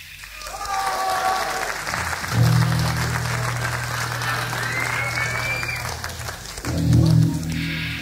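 Live concert audience applauding, with whistles, between songs. About two and a half seconds in, a low steady note from the stage comes in under the applause, stops near six seconds, and comes back shortly before the next song begins.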